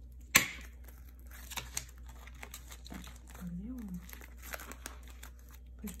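Clear plastic sleeve pages of a ring-binder photocard album crinkling and rustling as they are handled and turned. There is one sharp click just after the start, the loudest sound.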